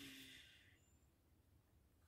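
Near silence, apart from a faint breath fading out in the first half second.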